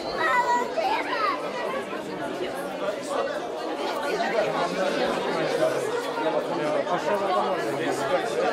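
Crowd chatter indoors: many voices talking at once in a steady, overlapping babble.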